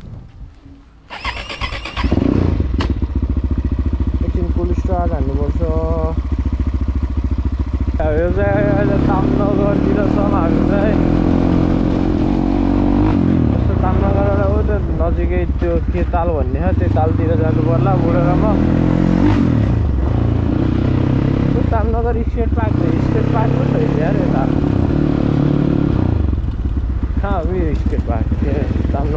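Dirt bike engine running as it is ridden, coming in about two seconds in. Its revs then rise and fall repeatedly.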